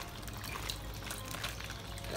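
Water pouring and trickling in a plastic fish-shipping bag at the aquarium, as the bag water is swapped for tank water to acclimate a newly arrived fish.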